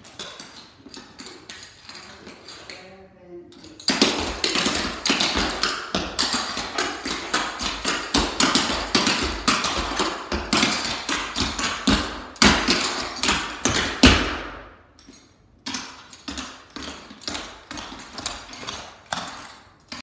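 Clogging taps on a hardwood floor: two dancers' metal shoe taps striking in fast, dense rhythms. The taps are light at first and get much louder about four seconds in. They stop briefly about fifteen seconds in, then resume more softly.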